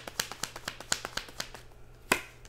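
A deck of tarot cards being shuffled by hand: a quick run of sharp card clicks, about six a second, thinning out in the last half second.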